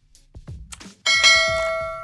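A bell-like notification chime sound effect strikes about a second in and rings on, slowly fading, over background music with a steady beat.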